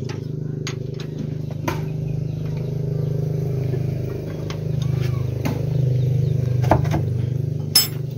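Kubota single-cylinder diesel engine running steadily, with a few sharp metallic clinks of tools on the engine, the loudest near the end.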